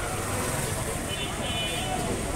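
Steady low background rumble with faint, indistinct voices behind it.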